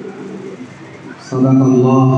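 A man's voice, amplified through a microphone, intoning an Arabic invocation. About two-thirds of the way in he begins one long, steady chanted note, much louder than the quieter voice before it.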